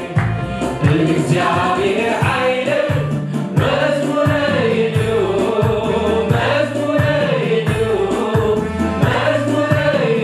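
Worship choir singing a Tigrinya hymn, accompanied by a Yamaha Tyros 4 arranger keyboard playing chords and a steady bass line.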